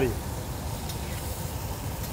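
Salmon fillet sizzling softly in a pan of melted butter, white wine and lemon juice, over a steady low rumble.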